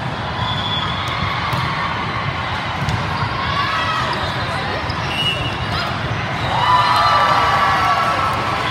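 Indoor volleyball in play: sharp ball contacts over a steady crowd hubbub, with players' calls and shouting getting louder near the end.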